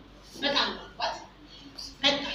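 Two short bursts of a person's voice, about half a second and one second in, between quieter moments.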